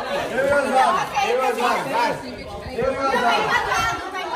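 Several people talking over one another: loud, excited group chatter with no single voice standing out.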